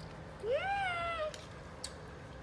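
A single meow, about a second long, rising quickly in pitch and then sliding down.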